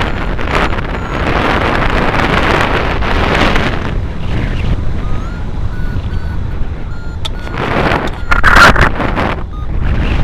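Wind rushing over the microphone of a hang glider in flight, rising and falling in gusts and loudest about eight and a half seconds in. Faint short high beeps from the glider's variometer come through the wind now and then.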